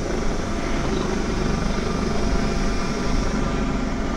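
Steady low mechanical rumble from the working cutter's machinery as its crane holds the buoy out over the side, with a Coast Guard helicopter flying overhead.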